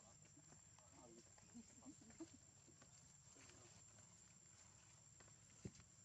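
Near silence: quiet outdoor ambience with a few faint, indistinct voices about one to two seconds in and a single soft tap near the end.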